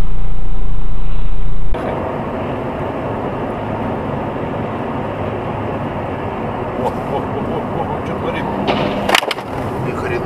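Dash-cam audio from a moving car: a loud low drone cuts off under two seconds in, followed by steady road and engine noise, with a few sharp knocks and a loud crack near the end.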